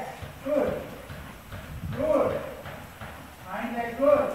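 Four short, drawn-out vocal calls about a second apart, over the muffled hoofbeats of a ridden horse on soft arena footing.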